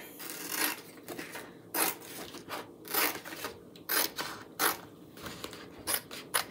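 Craft trimmer scissors cutting through a plastic transfer sheet in a string of short, irregular snips, with the sheets rustling as they are handled.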